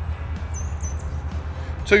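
A small bird gives two short, high chirps about half a second in, over a steady low rumble.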